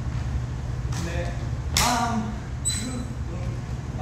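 A man's voice in short snatches, louder about two seconds in, over a steady low hum, with a brief high-pitched squeak a little later.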